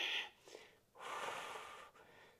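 A woman breathing audibly with effort while holding a balance in plank: one breath ending shortly after the start, then a second long breath from about one second in until just before the end.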